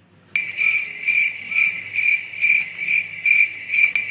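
Cricket chirping sound effect: a high steady trill that starts abruptly just after the opening and swells in even pulses a little over twice a second, the comedy stock 'crickets' of an awkward silence.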